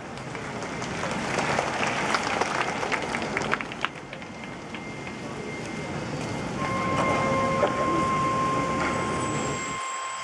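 Wind band in a soft passage: a rustling, noisy swell scattered with small clicks rises over the first couple of seconds and dies away by about four seconds in. About two-thirds through, a single steady high note is held to the end.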